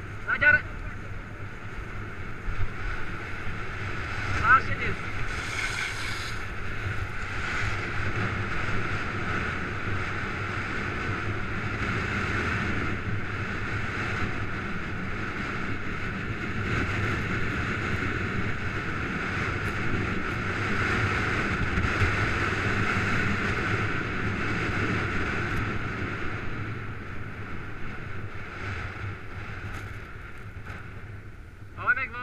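Sliding down a groomed ski slope: the steady scraping rush of edges over packed snow, mixed with wind on the microphone. Two short, high-pitched sounds stand out in the first five seconds.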